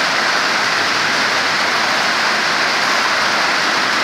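Rain falling steadily, a loud, even hiss with no breaks.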